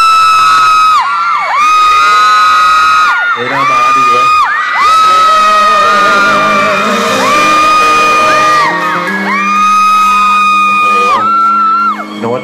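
Loud, high-pitched screaming by fans close to the microphone: about six long held shrieks one after another, over a live pop song with backing music and a male singer.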